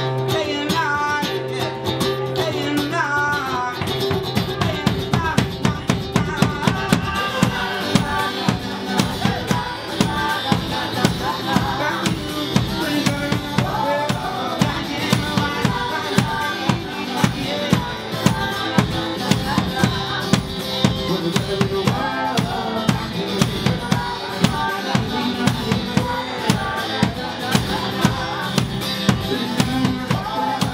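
Live band music: a strummed acoustic guitar with singing, joined about four seconds in by a steady beat on a large drum struck with mallets.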